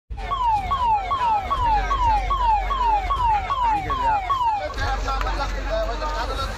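Emergency vehicle's electronic siren in a rapid repeating wail, each cycle a quick rise and a falling sweep, about two and a half cycles a second. It cuts off about four and a half seconds in, and voices follow.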